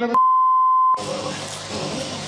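A single steady electronic beep at about 1 kHz, lasting just under a second and cutting off sharply, followed by the background noise of the next clip.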